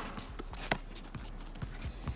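A basketball hits the hoop once with a sharp knock, about two-thirds of a second in, over faint scattered ticks.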